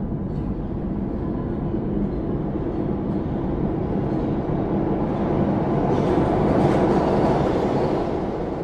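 Dense, rumbling sound-effect drone with a faint low hum in it, swelling louder in the last third and starting to fade near the end.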